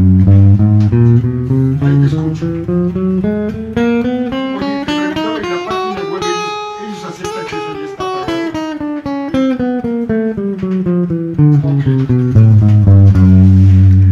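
Electric guitar playing the 1-2-3-4 chromatic finger warm-up exercise: single notes picked one after another at a steady pace. They climb from the low strings to the high ones, peaking about halfway, then step back down to the low strings.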